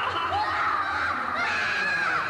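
High-pitched, wordless cartoon voices crying out, their pitch wavering up and down, with several voices overlapping.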